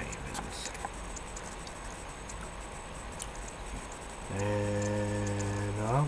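A man holding a steady, level hum for about a second and a half near the end, after several seconds of quiet background with a few faint clicks.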